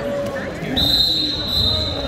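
Wrestlers' bodies thudding onto a gym wrestling mat during a takedown, with shouting voices around them. About three-quarters of a second in, a steady high-pitched whistling tone starts abruptly and holds for over a second.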